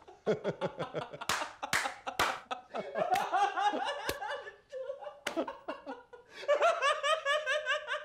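Men laughing heartily in rapid ha-ha pulses, with a few sharp gasping breaths about a second and a half in and a long, high-pitched run of laughter near the end.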